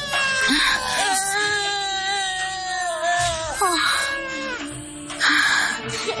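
A small child crying and wailing in several loud bursts over background music with long held notes.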